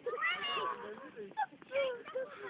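High-pitched, excited human voices shouting and squealing, with a louder cry near the end.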